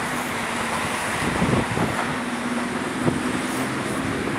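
Steady road traffic noise from vehicles passing on the bridge, with a low engine hum.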